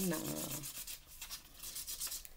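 Marker scribbling quickly back and forth on a paper plate: a run of rapid, scratchy rubbing strokes.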